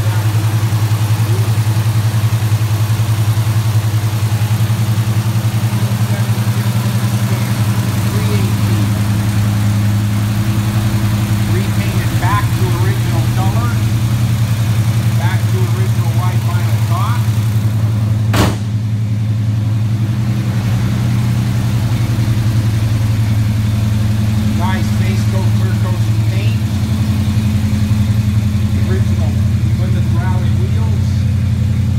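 1973 Plymouth Scamp's V8 engine idling steadily, with one sharp knock about eighteen seconds in.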